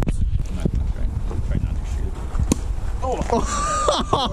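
Low wind rumble on the microphone, with a single sharp click about two and a half seconds in. Near the end a person's voice makes high, sliding sounds without words.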